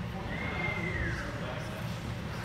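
A shoe squeaking on the hardwood gym floor during sparring footwork: one high squeak about a second long that holds its pitch, then falls, over a steady low room rumble.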